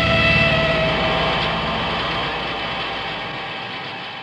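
Distorted electric guitar chord and amplifier drone ringing out at the end of a hardcore punk song, with no drums or vocals, fading away steadily.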